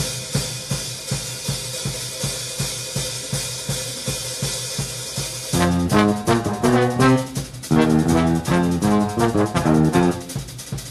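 High school jazz big band opening a tune: a drum kit groove with cymbals and a steady beat, then about five and a half seconds in the bass and horns come in together with a riff.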